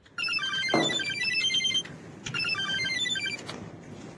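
Phone ringtone playing an electronic melody, heard as two rings separated by a short pause.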